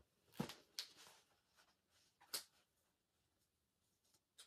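A paperback book being handled: a few brief, quiet rustles of pages and cover, the loudest about half a second in and another about two and a half seconds in.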